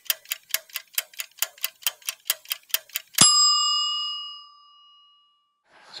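Clock-ticking sound effect, about five quick ticks a second for three seconds, ending in a single bell-like ding that rings out and fades.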